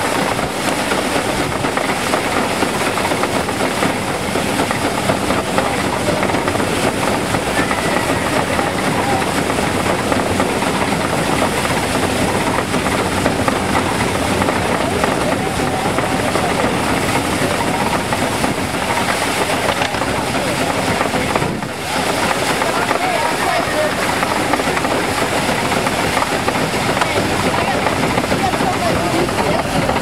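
Small horse-treadmill-powered grain separator running as sheaves are fed through it: a steady, dense mechanical clatter and rattle, with a brief dip about two-thirds of the way through.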